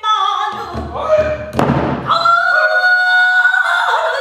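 Female pansori singer's voice, sliding and bending through a phrase, then holding one long high note for over a second in the second half. Low buk drum strokes sound under the voice in the first half, with one sharp stroke near the middle.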